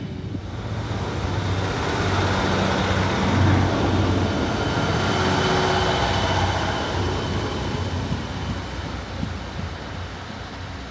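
Class 150 diesel multiple unit running past below and pulling away: a low diesel engine drone with rail and wheel rumble that builds about a second in, is loudest in the middle, then fades toward the end.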